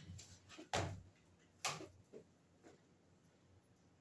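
A handful of short, sharp knocks and clicks in a quiet room. The two loudest come about a second apart near the start, with fainter ones around them.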